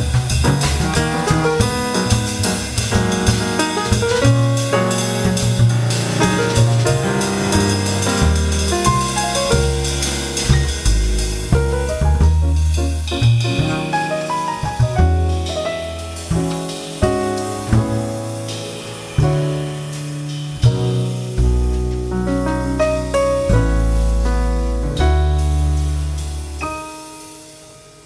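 Live jazz piano trio playing: grand piano, upright double bass and a Yamaha drum kit with cymbals. Busy drumming fills the first half, then thins out to fewer hits over long held bass notes and piano chords.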